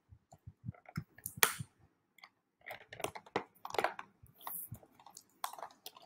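Scissors cutting into a toy's plastic blister packaging, the plastic crinkling and crackling in a series of short, uneven clicks and bursts.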